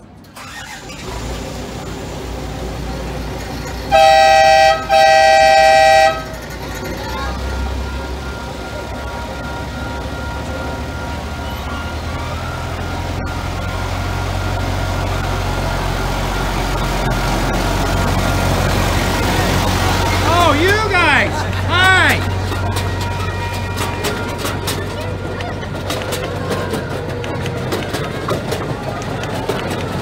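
Riding-scale diesel-outline locomotive sounding two loud blasts on its horn about four seconds in. Its engine then rumbles and slowly grows louder as the train pulls out of the station and passes close by, with people's voices around it.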